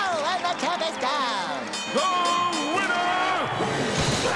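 A cartoon character's wordless vocalising, swooping up and down in pitch, over background music, with a steady high ringing tone through the middle.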